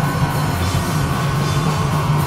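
Punk rock band playing live: guitars, bass and drums in a steady, loud wash, with a long held note that sags slightly in pitch near the end.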